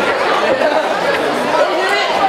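Fight crowd in a large hall: many voices talking and calling out at once, a steady din with no single voice standing out.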